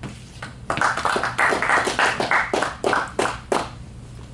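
Audience applauding, starting just under a second in and thinning out into a few separate last claps near the end.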